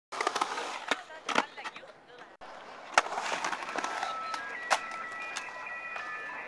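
Skateboard rolling on concrete, with several sharp clacks of the board's tail and wheels hitting the ground.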